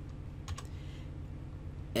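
A couple of faint clicks at the computer about half a second in, over a steady low electrical hum.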